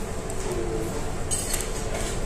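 Steady background hum with a quick cluster of light clinks about a second and a half in.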